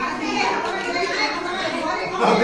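Several people's voices talking and calling out over one another in a busy jumble, with no single clear speaker.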